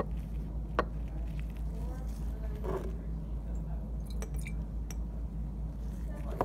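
Light clinks and taps of glass lab bottles and cylinders being handled on a bench, the sharpest one a little under a second in, over a steady low hum.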